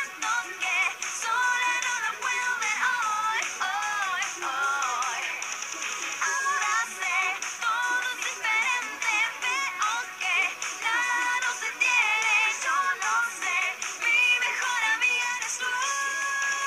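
A live pop song, a group of girls singing the melody over the band's backing, heard thin, with little bass and a hissy top.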